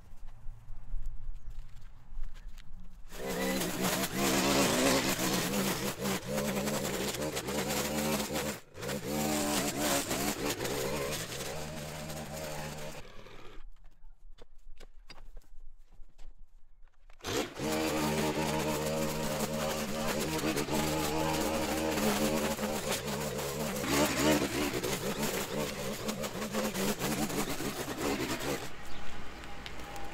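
String trimmer running at cutting speed, whipping through dry grass and weeds, with a steady high engine note and a rush of cutting noise. It sets in about three seconds in, drops out for about four seconds near the middle, then runs again.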